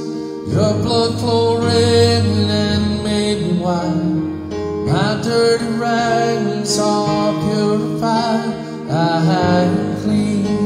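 A man singing a slow worship song into a microphone over sustained instrumental accompaniment, his phrases entering about half a second in, again around five seconds and again near nine seconds.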